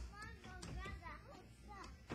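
A young child's high-pitched voice, with a sharp knock from a blow on a wooden wing chun dummy right at the start.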